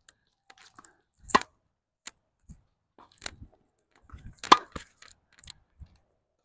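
Tennis balls struck by rackets and bouncing on a hard court during a baseline rally. The two loudest are sharp racket hits, about a second in and again about three seconds later, with fainter hits and bounces between them.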